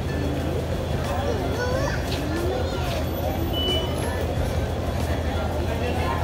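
Busy ambience: a steady low rumble under scattered voices of people and children.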